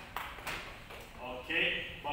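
Voices speaking, with a couple of short clicks in the first half-second.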